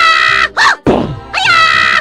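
A high-pitched cartoon voice wailing in a repeating pattern: a long held cry, a short rising-and-falling yelp about half a second in, then another held cry from about a second and a half.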